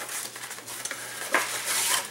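Cardboard frozen-food box being torn open and handled, a crackling, scraping rustle with a few sharp tearing clicks as the pie in its tray comes out.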